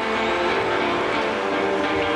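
Distorted electric guitar holding a droning chord through the festival PA during a live heavy rock set, the notes held steady without a beat.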